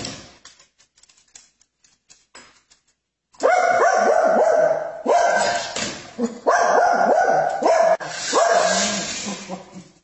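A dog barking repeatedly in loud, sharp bursts, starting a little over three seconds in after a quiet stretch with a few faint clicks.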